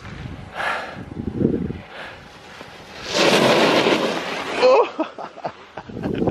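Wind buffeting the camera's microphone in uneven gusts, loudest in a long rushing stretch from about three seconds in.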